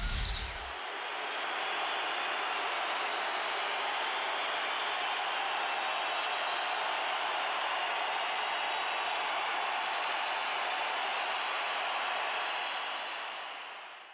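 Steady, even rushing noise with no tune or beat, holding at one level and fading out at the end, following the tail of a hit at the very start.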